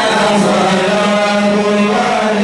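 Male voice chanting a madih nabawi (praise song for the Prophet), holding one long steady note.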